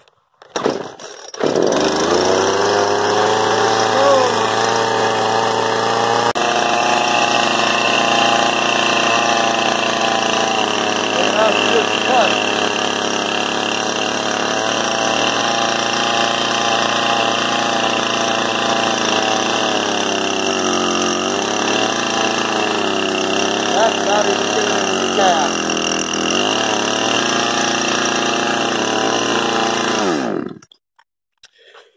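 Poulan Pro 50cc two-stroke chainsaw catching suddenly about a second and a half in, then running steadily, its pitch dipping twice in the last third, after a cold start on the choke.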